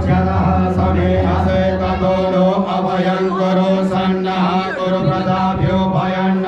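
A group of men chanting a devotional Hindu hymn together, one voice leading through a microphone, over a steady low drone.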